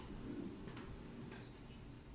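Quiet courtroom room tone with a couple of faint, sharp clicks.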